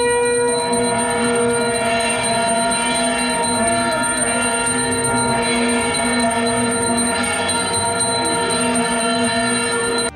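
Puja hand bell rung continuously, giving a steady, unbroken ringing with several overtones.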